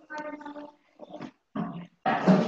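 A person's voice coming through a video call: a drawn-out, high-pitched vocal sound with no words lasting under a second, followed by two short, quieter vocal sounds.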